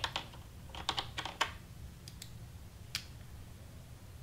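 Computer keyboard keys being pressed: a quick run of a few clicks about a second in, then a couple of single clicks later on.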